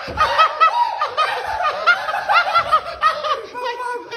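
Fits of high-pitched laughter, short repeated giggles several times a second, dying down near the end.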